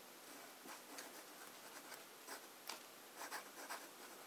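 1950s Montblanc 344 fountain pen with a fine flex nib writing cursive on notebook paper: faint, soft scratching from a series of short nib strokes.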